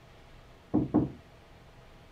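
Two quick knocks on a closed paneled door, about a quarter of a second apart.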